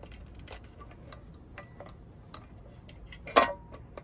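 Scattered light clicks and taps of hands working the screws and metal fittings of a turbo broiler's heating element on its glass lid, with one sharp, louder knock about three and a half seconds in.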